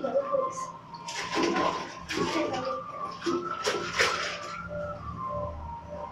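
Bathwater splashing in a foam-filled bathtub in three short bursts, with small children's voices.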